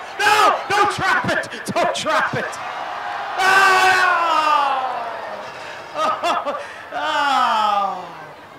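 A person laughing hard in a quick run of short bursts, then two long whoops that fall in pitch.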